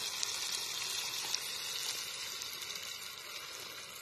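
Cornmeal-battered bowfin nuggets frying in oil heated to about 350 degrees in a cast-iron pot. It is a steady sizzle with many small pops that slowly fades.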